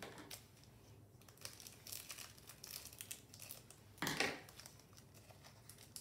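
Foil booster-pack wrapper crinkling and crackling as it is cut open with scissors and the cards are pulled out, with a louder rustle about four seconds in.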